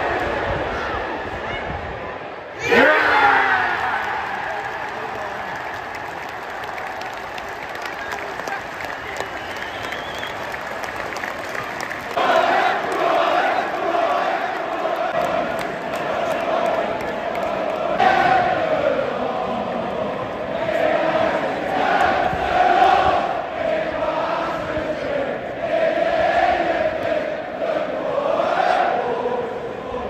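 Football stadium crowd breaking into a sudden roar about three seconds in, as at a home goal, fading back to a noisy hum; from about halfway through the home fans sing a chant together, swelling again a few seconds later.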